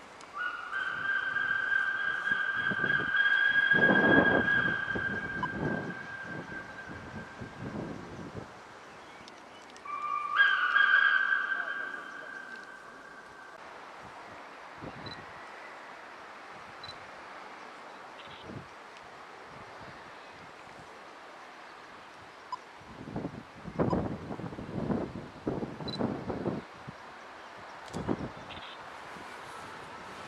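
Steam locomotive whistle on the 241P17 giving two blasts, each several notes sounding together. The first is long, lasting about eight seconds. The second is shorter, about ten seconds in, starting on a lower note and stepping up. A few seconds of irregular low puffing noise follow near the end.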